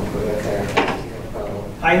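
A squeaky chair creaking as someone shifts in it, under low talk.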